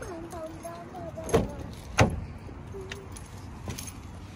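Keys jangling and the driver's door of a Nissan Murano being opened: two sharp clicks about a second and a half and two seconds in.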